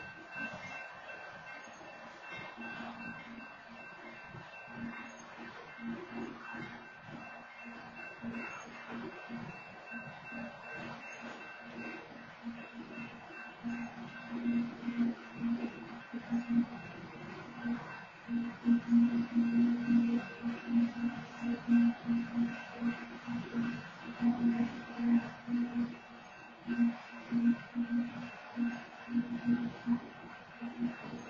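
Freight train of covered hopper cars rolling slowly past a grade crossing, with a low pulsing tone that gets much louder about halfway through.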